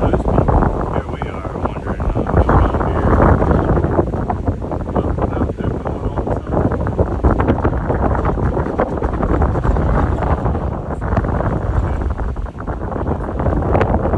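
Hurricane-force wind buffeting the microphone from a moving truck: a loud, gusty rushing that rises and falls throughout.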